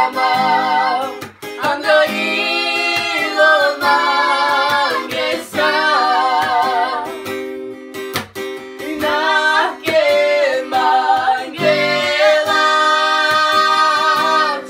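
Voices singing a song, a woman's and a man's, over acoustic guitar accompaniment.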